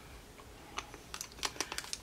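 A quick, irregular run of small sharp clicks, about ten in just over a second, starting about a second in.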